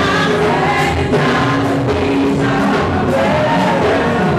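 Gospel music: a choir singing to a band accompaniment, loud and steady.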